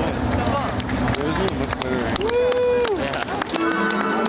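Fireworks crackling and popping in many sharp cracks over show music, with a crowd of spectators talking and exclaiming; about two seconds in, one voice holds a long drawn-out note.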